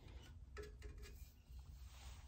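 Near silence, with a few faint handling clicks and rustles as a thin copper strip is bent by hand around a metal pipe.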